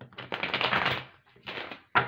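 A deck of tarot cards being riffle-shuffled: a fast run of card-edge flicks lasting about a second, then a shorter second burst as the deck is shuffled again and squared.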